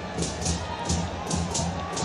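Football stadium crowd with a steady rhythmic beat of supporters' drums and clapping, about two to three beats a second.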